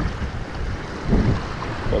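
Wind buffeting the microphone: a gusty, rumbling noise with no steady tone.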